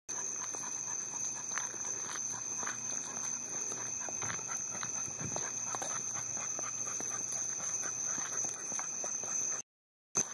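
Pit bull whimpering in short, irregular sounds, over a steady high-pitched tone. The sound cuts out briefly near the end.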